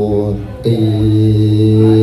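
A Buddhist monk intoning a Pali verse in a chanting voice. A short chanted phrase dips away about half a second in, then he holds one long note at a steady low pitch.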